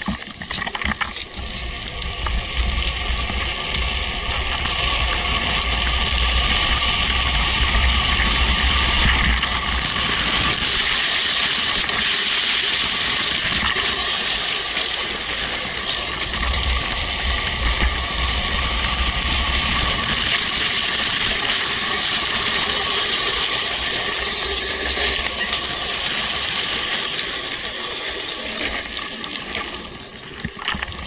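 Motorless drift trike coasting downhill, its hard rear wheels hissing and rattling over wet asphalt, with wind gusting on the microphone. The noise builds over the first several seconds as the trike picks up speed from a standstill, then stays loud.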